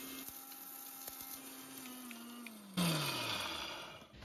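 Sumeet Traditional mixer grinder motor running on high, grinding dried turkey tail mushroom. After about two seconds its pitch starts to fall as it winds down, with a brief louder rush of noise near the three-second mark.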